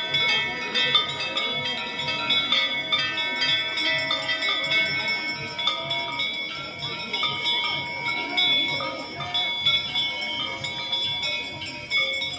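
Many temple bells ringing at once in a continuous, overlapping clangour, over a low, steady beat.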